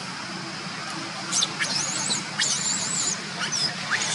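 Baby macaque crying: a string of high, wavering squeals that starts about a second in and keeps going.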